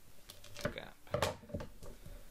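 Scissors cutting copper tape: a few short, crisp snips and clicks spread over two seconds.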